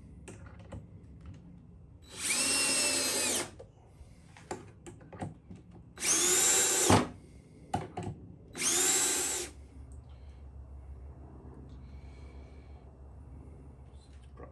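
Cordless drill driving screws into the plywood box top: three runs of about a second each, the motor whine rising as each one starts and then holding steady.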